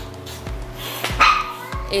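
A dog barking about a second in, over steady background music.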